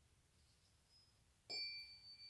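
A tuning fork struck once with a ball-headed mallet about one and a half seconds in, then ringing with a clear, high tone that slowly fades.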